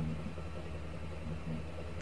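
A faint, steady low hum of background noise, with no distinct events.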